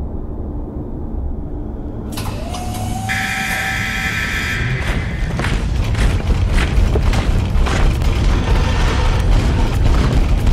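Deep, steady low rumble of a cinematic sound-effects bed. About two seconds in, a hiss and a faint rising tone join it. From about five seconds, a growing run of sharp clanks and knocks comes in.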